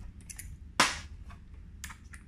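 Small metal tools and a driver bit being handled on a metal-topped workbench: one sharp metallic clack a little under a second in, with a few lighter clicks before it and near the end.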